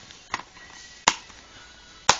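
Two sharp clacks of plastic DVD cases being handled, a lighter one near the start and a louder one about a second in.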